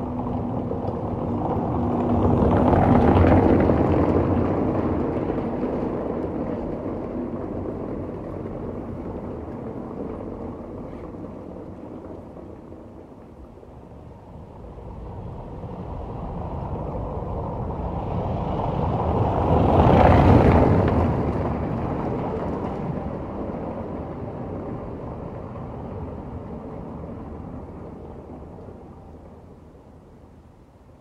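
Two vehicles passing by, one after the other: the first swells to its loudest about three seconds in, the second about twenty seconds in, and each fades away slowly.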